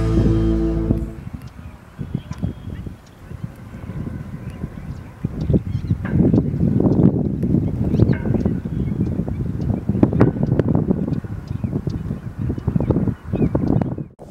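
Wind buffeting the camera microphone on an exposed hilltop: an uneven, gusty low rumble that rises and falls.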